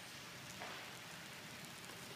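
Faint steady hiss, with a couple of very faint light ticks.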